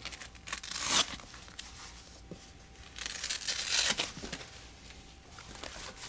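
Hook-and-loop fastener straps of a leg compression wrap being pulled open: two drawn-out ripping sounds, the first building to a peak about a second in, the second from about three to four seconds.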